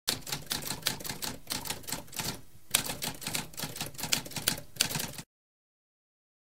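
Typewriter keystrokes clacking in quick runs, with a brief pause about halfway, stopping abruptly about five seconds in.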